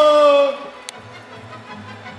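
A man's voice in a long, drawn-out laugh with a slowly falling pitch, cutting off about half a second in; quiet background music follows.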